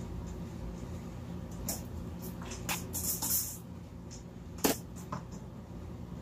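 Handling clatter from changing a snake's water dish: a few light knocks, a short rushing noise around three seconds in, and one sharp knock just before five seconds, the loudest, over a steady low hum.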